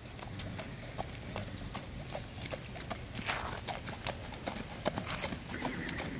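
A horse trotting in hand on wet asphalt, its hooves clopping in a quick, steady run of strikes that grow a little louder near the end as it comes closer.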